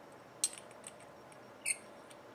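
Copper tube parts of a mechanical vape mod being twisted together by hand: a few faint metal clicks, then a short high-pitched scrape near the end.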